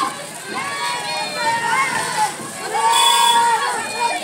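Children's voices shouting slogans in a crowd, with one long drawn-out call near the end.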